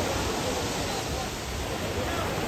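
Sea surf washing onto a pebble beach, a steady rush of water, with faint voices of bathers in the background.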